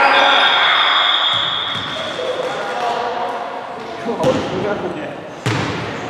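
Basketball play on a hardwood gym floor: the ball bouncing amid players' voices, with two sharp bangs about four and five and a half seconds in, echoing in the large gym. A high, steady tone is held through the first two seconds.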